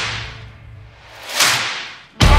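Whoosh sound effects in a gap in the music. One swoosh fades away, then a second swoosh swells about one and a half seconds in and dies down before the music comes back.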